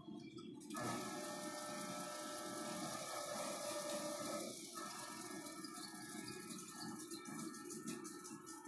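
A Teledyne Readco UPC-25 welding positioner's electric drive and gearing start up under the pendant control about a second in, running with a steady multi-tone whine over a hiss. The whine changes pitch about four and a half seconds in.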